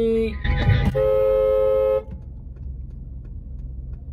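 Car horn giving one steady blast of about a second that cuts off sharply, heard from inside a moving car; it is a warning as another car runs a red light and nearly hits the car. A short loud rush of noise comes just before it, with steady road noise after.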